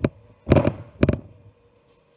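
Three knocks as the pastry block is pressed down against a stainless steel worktop to seal its edges. The middle one, about half a second in, is the longest and loudest.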